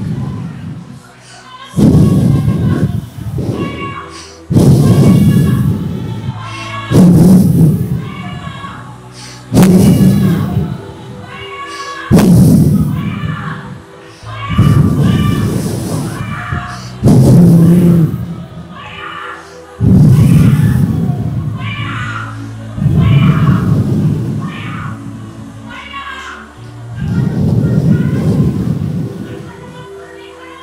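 Loud amplified vocal phrases over music through a hall PA, about one every two and a half seconds. Each phrase opens with a heavy booming thump and then fades.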